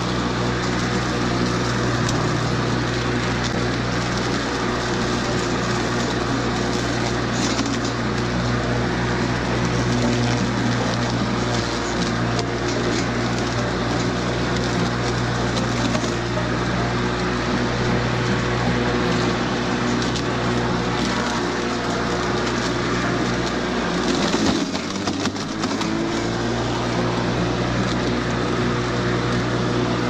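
Battery-powered walk-behind lawn mower running steadily as it is pushed through dry grass and weeds: a motor hum with the rush and crunch of cut grass. About 25 seconds in the hum dips briefly in pitch and then picks back up.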